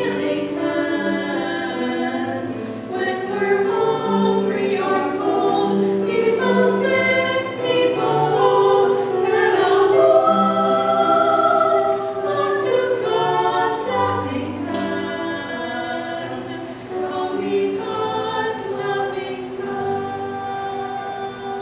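A small group of women's voices singing in harmony, holding long notes that move in steps.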